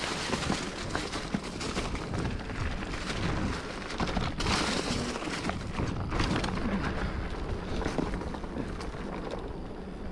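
Mountain bike riding over a rough trail: a steady noisy rush with many quick rattles and knocks from the tyres and bike, and heavy low rumble typical of wind on the microphone.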